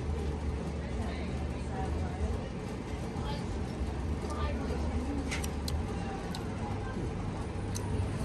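Open-air background: a steady low rumble with faint, indistinct voices and a few faint clicks.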